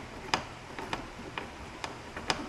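Hand screwdriver driving chrome screws into a plastic front license plate bracket, giving about four sharp ticks, roughly one every half second.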